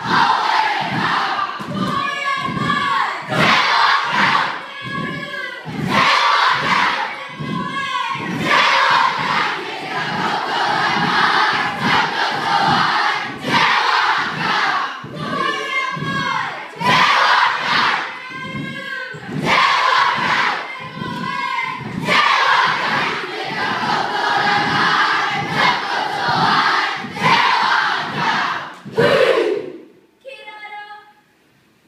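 Haka performed by a children's kapa haka group: many young voices chanting and shouting in unison over rhythmic thumps of stamping and slapping. It stops sharply at the end.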